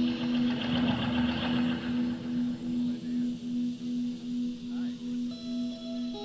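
Live rock band in a slow, spacey jam: a low note pulses evenly about three times a second under sustained higher tones. Audience voices rise over the music in the first couple of seconds.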